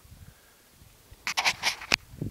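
Faint low rumble, then a little over a second in a quick run of five or six loud scrapes and knocks, the sound of a handheld camera being handled, with fingers and fabric rubbing against the microphone.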